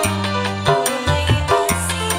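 Indonesian qasidah music played live: a deep bass line and a steady drum beat under a keyboard, bamboo flute and violin melody.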